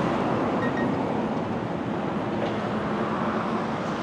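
Steady road traffic noise, an even hum with no single vehicle standing out.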